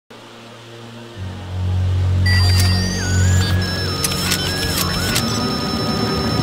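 Cartoon sci-fi sound effect of the Omnitrix alien watch being dialled. Electronic whirring tones, a rising whistle and a wavering tone that steps down, with several sharp clicks as the dial turns, over a low music drone that comes in about a second in.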